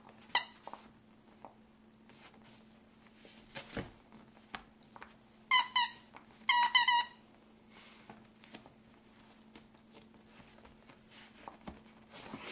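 A dog chewing a plush squeaky squirrel toy. The squeaker squeaks once near the start, then in two quick runs of several squeaks about halfway through. A soft thump comes just before the squeaks, and faint chewing clicks fall between them.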